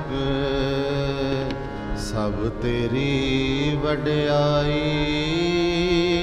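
Sikh Gurbani kirtan: a voice singing long, wavering held notes of a hymn over a steady harmonium accompaniment.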